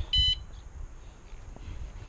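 Aftermarket motorcycle alarm giving one short electronic chirp as it arms from the key fob.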